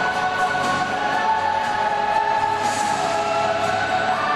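Figure skating program music: a choir singing long held notes that change pitch slowly and smoothly, at a steady level.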